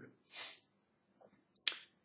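A short breath, then about a second later a sharp mouth click from a man pausing between sentences; the click is the loudest sound.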